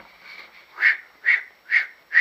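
A man's mouth sound imitating a blade being stroked back and forth on a sharpening stone: three short, even swishes about half a second apart.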